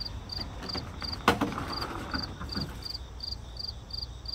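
A cricket chirping steadily, about two and a half short high chirps a second. A single sharp knock sounds about a second in, with a few faint clicks after it.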